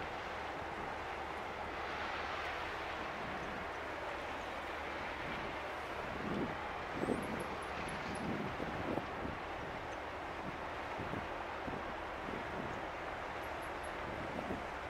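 Steady drone of the tanker Sydstraum passing close by, with wind gusting on the microphone a few times midway.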